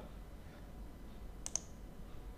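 A single computer mouse click about one and a half seconds in, over quiet room tone: the button press that sets off clip generation.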